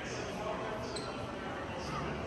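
Indistinct voices of people talking in a large hall, over steady room noise.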